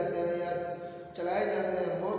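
A man chanting Qur'anic verses in Arabic (tilawat) in long, drawn-out notes, with a short breath break a little after a second in.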